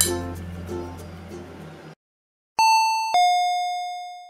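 Light background music ends about two seconds in; after a short silence a doorbell chime rings two falling notes, ding-dong, each ringing on as it fades.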